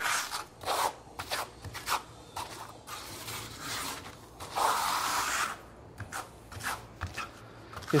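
Steel trowel scraping and spreading a thick, trowelable liquid air-barrier coating (Backstop NT Texture) over glass-mat gypsum sheathing, in a series of short strokes with one longer stroke about halfway through.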